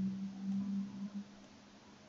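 A person humming or drawing out a sound on one steady low note for about a second. It is fairly faint and fades away, leaving quiet room tone.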